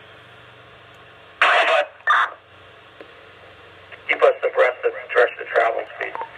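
Police radio traffic from a mobile two-way radio's speaker: an open channel hissing steadily, two short loud bursts of noise about a second and a half and two seconds in, then clipped radio voices from about four seconds in.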